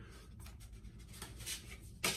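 Faint rubbing and scuffing of hands handling a razor's cardboard presentation box, with a slightly louder scuff about a second and a half in.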